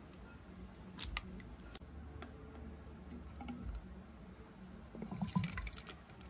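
Plastic bottle handling: sharp plastic clicks about a second in as a small bottle's cap is worked. Near the end, liquid is poured from a small container into a plastic bottle, with a short patter of trickling and splashing.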